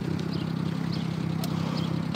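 Small engine of a Japanese kei mini truck idling steadily, a low even hum.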